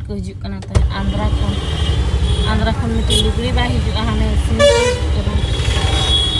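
Car interior with a steady low engine and road rumble that starts suddenly about a second in. Voices are heard over it, and a vehicle horn sounds near the end.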